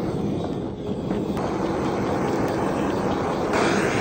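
Handheld gas torch burning with a steady hiss as its flame sears pieces of raw fish. It gets louder about a second and a half in and again near the end.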